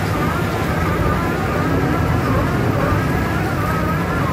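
Komptech Terminator xtron shredder with its CAT diesel engine running under load as it shreds waste wood: a steady low rumble with a wavering whine above it.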